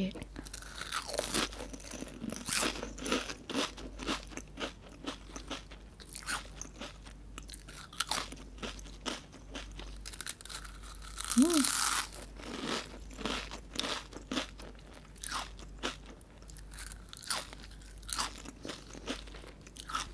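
Thin, crispy snack chips bitten and chewed close to the microphone: a dense run of sharp crunches with no pause, and a brief hum about midway.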